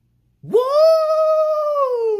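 A man's long, high-pitched yelled "woo": it sweeps sharply up about half a second in, holds steady, then slides down in pitch near the end.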